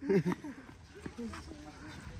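A brief shouted exclamation at the very start, then faint distant voices of the players over quiet street background.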